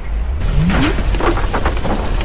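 Deep explosion rumble with dense crackling and pattering, like blasts and falling debris. It starts fresh about half a second in, with a short rising tone just after.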